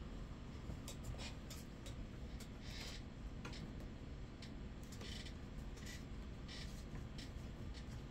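A deck of reading cards being shuffled and handled by hand: faint scattered light clicks with a few brief soft rustles.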